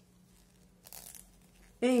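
A brief faint rustle about a second in, as yarn is worked on green knitting needles during a stitch. A woman's voice begins near the end.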